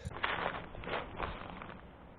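A few soft, irregular clicks and rustles, about five in under two seconds and fading toward the end: handling noise or movement on a creek bank.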